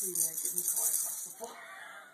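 Baby babbling in short, wordless vocal sounds, one gliding down in pitch, fading toward the end, over a steady high hiss.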